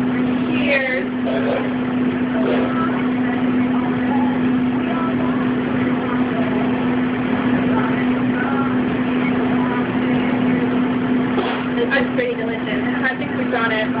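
Steady machinery hum and noisy rush of restaurant kitchen equipment, with indistinct voices briefly near the start and again from about eleven seconds in.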